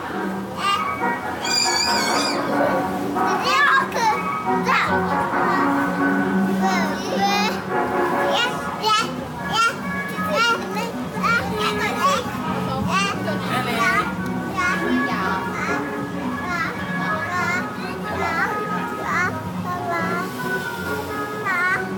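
Carousel music playing steadily, with children's chatter and high-pitched squeals over it.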